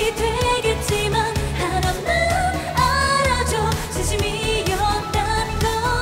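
K-pop girl-group song performed live: female vocals over a dance-pop backing track with a steady beat and heavy bass.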